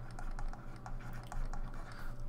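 Pen stylus ticking and scratching on a tablet surface while writing a word by hand: an irregular run of quick, light clicks.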